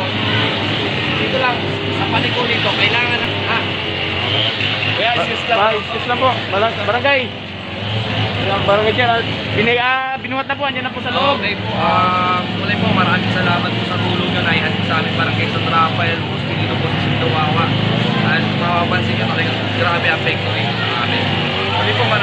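Several people talking in conversation, with a steady low engine hum underneath.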